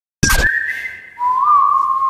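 A short sharp hit, then a whistled note held for about a second that drops to a lower held note with a brief bend in pitch.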